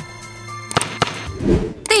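Background music with two sharp clicks about a second in, the mouse-click sound effects of a like-and-subscribe button animation.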